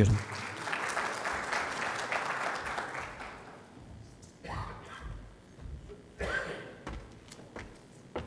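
Audience applauding in a large hall, fading out over about three and a half seconds, followed by a few scattered low thumps.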